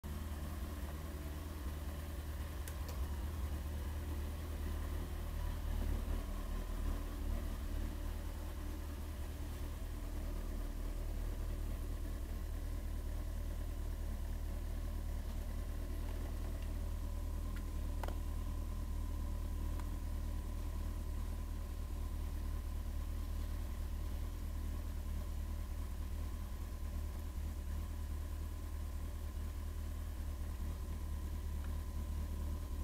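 Kawasaki ZX-14's inline-four engine idling steadily, a low even hum with no revving. A single sharp click about eighteen seconds in.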